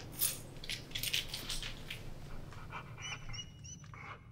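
A dog making a run of short breathy noises, then a few short, high, squeaky sounds near the end.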